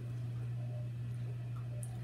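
A steady low hum in a quiet room, with a faint click near the end.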